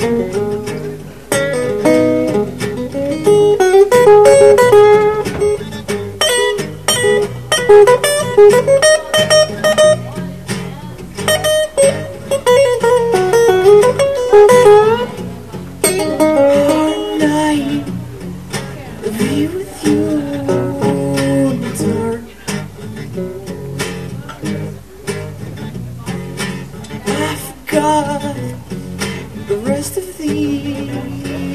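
Two acoustic guitars playing a blues-based song live: chords strummed in a steady rhythm under a lead acoustic guitar picking melodic lines that bend in pitch.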